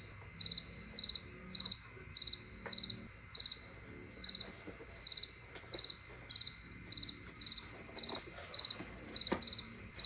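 Cricket chirping steadily, about two and a half short chirps a second, each chirp a rapid trill of pulses. A few faint clicks sound underneath.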